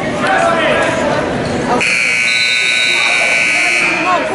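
Gym scoreboard buzzer sounding one steady tone for about two seconds, starting about halfway through, signalling that the wrestling period's clock has run out.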